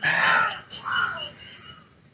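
Crows cawing: two harsh caws in the first second or so, then a faint lull.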